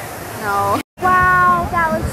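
A woman's high-pitched, drawn-out vocal cries, first gliding up and down, then after a brief dead gap from an edit cut just before the middle, a long held high note.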